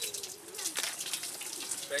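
Water running from a village fountain tap and splashing over hands as they are washed in the stone basin below.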